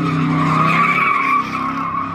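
Car engine held at high revs while its tyres spin and squeal against the pavement, a steady squeal over the engine note that eases a little near the end.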